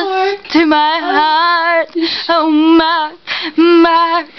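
A woman singing unaccompanied in a high voice, holding long notes with a wavering vibrato, with short breaks between phrases.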